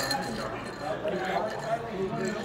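Ice rattling in a tall glass of Bloody Mary as it is stirred with a straw, under quiet background chatter.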